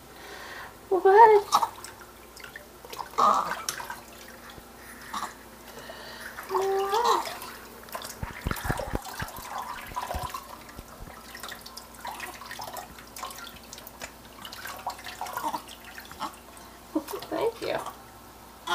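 Water splashing and dripping as a newborn is washed in a kitchen sink, with a few short baby vocalizations every few seconds. A few dull knocks come about halfway through.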